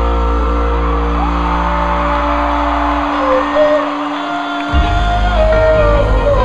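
Live rock band playing in an arena, recorded from the audience: electric guitar lines over a full band. The bass end drops away for a moment about four seconds in and comes back before the end.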